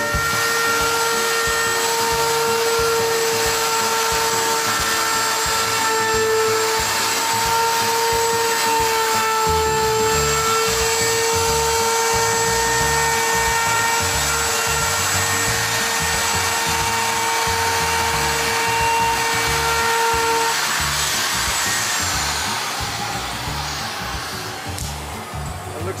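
Handheld woodworking router running at full speed with a steady high whine as it mills a profile along the edge of a maple bookcase panel, then winding down about 21 seconds in.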